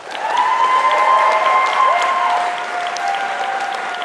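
Audience applauding, a dense clapping that starts just as the talk ends, with a few long held notes rising over it.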